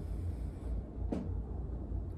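A slow, faint breath drawn in during a four-count inhale, over a steady low room hum, with one soft click about a second in.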